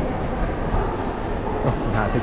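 Moving walkway (travelator) running, a steady low mechanical rumble.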